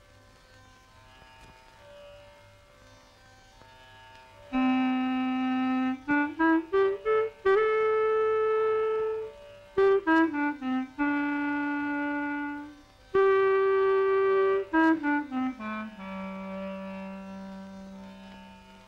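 Studio-logo theme music played by a solo reed woodwind, clarinet-like. It starts soft, turns loud about four and a half seconds in with long held notes joined by quick runs of short notes, and steps down to a long low note near the end.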